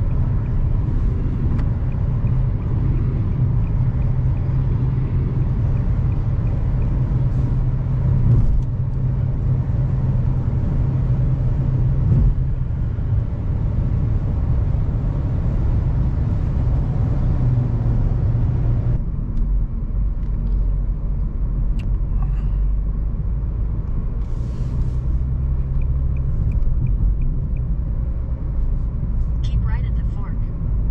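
Steady road and tyre noise with a low engine drone heard inside a car's cabin while driving at highway speed. The hiss thins out abruptly about two-thirds of the way through, leaving mostly the low rumble.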